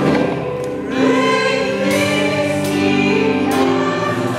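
Gospel music: a choir singing over a band, with cymbal crashes about two seconds in and again near the end.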